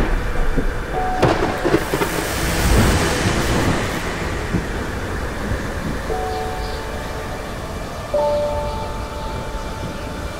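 Thunderstorm: steady heavy rain with a sharp thunder crack about a second in and rolling thunder rumble over the first few seconds. Held synth notes come in over the second half.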